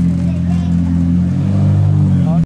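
McLaren P1 GTR's twin-turbo V8 idling steadily, its note shifting slightly about one and a half seconds in.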